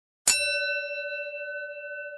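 A bell struck once about a quarter second in. It rings on with a long, slowly fading tone, sounded to open a prayer.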